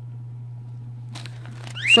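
A steady low hum, with a few faint crinkles of a plastic zip-lock bag being handled a little past a second in; a woman's voice starts near the end.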